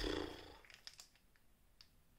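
A person's short breath, fading over about half a second, followed by a few faint clicks.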